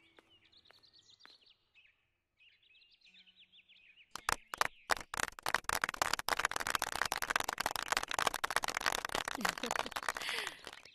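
Small birds chirping in quick, repeated falling calls. About four seconds in, a small audience breaks into applause, which becomes the loudest sound and keeps going.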